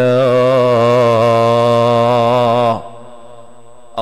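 A man's voice holding one long chanted note with a slight waver for nearly three seconds, then breaking off abruptly.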